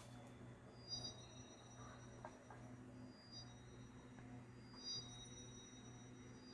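Near silence: a faint steady low hum with a few soft ticks.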